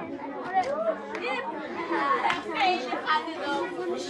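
A class of schoolboys chattering all at once, many overlapping voices with no one voice standing out.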